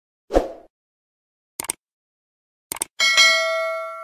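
Subscribe-button animation sound effects: a short soft pop, two quick double clicks, then a bell ding about three seconds in that rings on as it fades.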